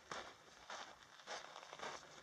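Faint footsteps crunching on a gravelly dirt trail, four even strides about half a second apart.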